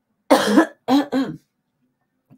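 A woman coughing: one harsh cough about a third of a second in, then two shorter voiced coughs close together.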